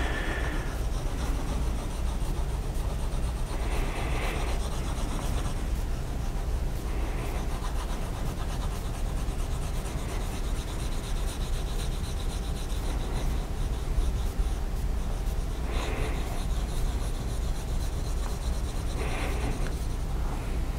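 Pencil shading on paper: a steady scratchy rubbing of graphite strokes going back and forth, louder in a few short spells.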